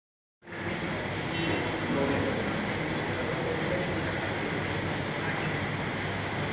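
Steady rumbling background noise with faint murmuring voices, starting about half a second in.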